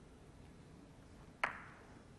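Snooker balls colliding: one sharp click about one and a half seconds in, in an otherwise quiet hall. It comes on a shot at a red that is then missed.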